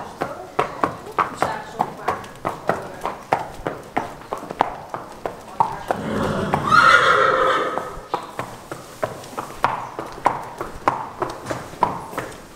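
Horse hooves clip-clopping at a walk on brick paving, an even run of sharp knocks. Just past the middle a horse whinnies loudly for about a second and a half.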